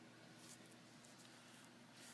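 Near silence: faint room tone with a low hiss.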